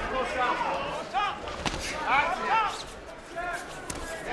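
Kickboxing bout heard from ringside: scattered shouts from the corners and crowd, and one sharp thud of a strike landing about one and a half seconds in.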